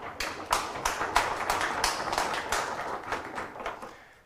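Audience applauding, a dense patter of many hands clapping that thins out and dies away near the end.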